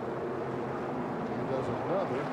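Engines of a pack of NASCAR V8 race trucks running together, a steady drone with some rising and falling pitch near the end.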